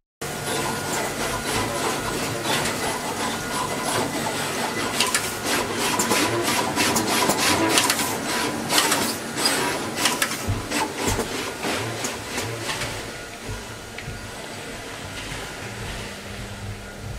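Sony high-speed SMT pick-and-place machines running: fast, dense clicking of the placement heads over a steady machine hum. The clicking is busiest in the middle and thins out near the end.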